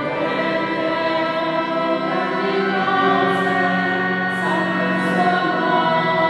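Small mixed vocal ensemble singing a slow sacred song in held notes, accompanied by violin and keyboard, with a few sung 's' consonants standing out midway.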